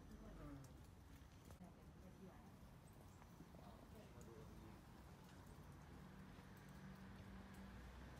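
Near silence: quiet room tone with faint, distant voices and a few faint clicks.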